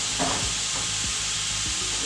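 Ground beef with green pepper and onion sizzling steadily in a skillet on the stove.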